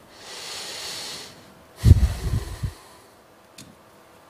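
A man's audible breath, a soft hiss lasting about a second, followed about two seconds in by a short, low throat sound.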